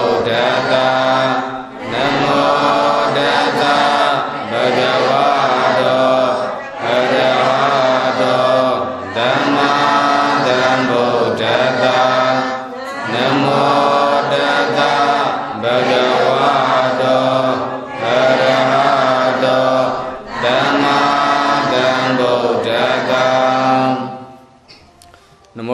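Buddhist devotional chanting: a steady recitation in phrases of about two to three seconds, each followed by a brief pause for breath.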